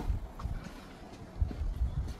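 Low rumble of wind on the phone microphone, with soft footsteps on concrete paving about one and a half seconds in.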